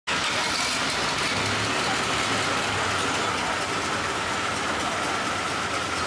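A boat engine running steadily, with a steady high whine over a continuous noisy rumble.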